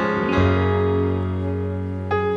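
Piano music playing sustained chords in a song's instrumental intro, with a new chord and a deep bass note coming in about half a second in.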